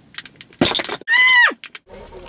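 A bottle being opened: a few small clicks as the cap is worked, then a short sharp pop and hiss about half a second in. It is followed by a loud, high-pitched squealing whoop lasting about half a second that drops in pitch at the end.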